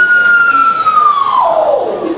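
A long high note, held steady, in a live rockabilly performance. In the second half it slides steeply down by about two octaves.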